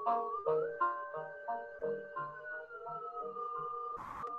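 Modular synthesizers playing electronic music: a pulsing sequence of short notes about three a second over low pulses, with held tones that glide up early and then slowly sink.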